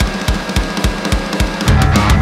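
Punk rock song intro: drums play a fast, even beat of about three to four hits a second, and about a second and a half in the rest of the band comes in, much louder and fuller in the low end.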